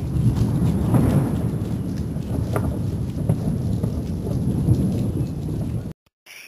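Rainstorm sound effect: heavy rain with a continuous low thunder rumble and faint crackles, cutting off suddenly just before the end.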